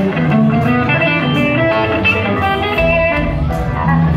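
Live rock band playing guitar-led music, with electric guitars to the fore. The low end gets heavier about three seconds in.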